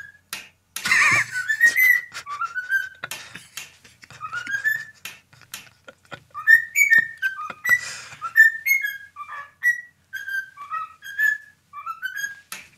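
Cockatiel whistling a melody of short notes that step up and down in pitch, with scattered sharp clicks between them.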